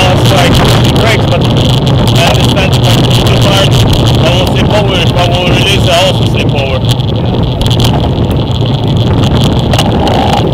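Wind rushing and buffeting over a bicycle-mounted camera's microphone while riding, a loud steady roar with gusty crackle throughout.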